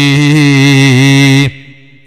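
A man's voice holding one long chanted vowel at a nearly steady pitch, the drawn-out sing-song ending of a phrase in a religious sermon; it stops abruptly about one and a half seconds in.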